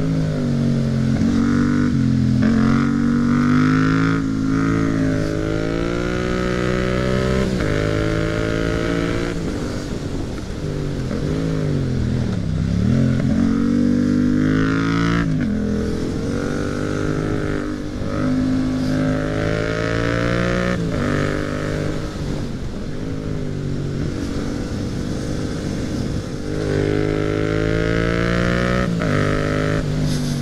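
Yamaha MT-07 parallel-twin engine heard from the rider's seat, revving up and dropping back repeatedly as it accelerates through the gears between bends, with sudden pitch drops at each shift. Near the middle the revs fall away deeply, then pick straight back up.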